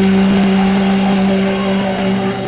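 Live rock band holding a long sustained chord, the electric guitar ringing steadily through its amp under a continuous cymbal wash, as at the close of a song.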